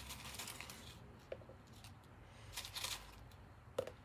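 Faint crinkly rustling from hands handling materials, with brief scratchy bursts near the start and about two and a half seconds in, and a sharp click just before the end.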